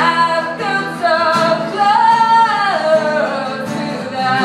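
A woman singing long held notes over strummed acoustic guitar, one note sliding down in pitch about two-thirds of the way through.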